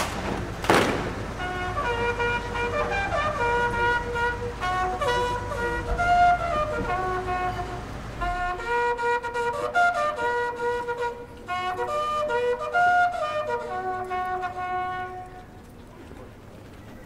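Military band music for a royal salute: a slow melody of high, flute-like notes. A brief thump comes just before the music begins.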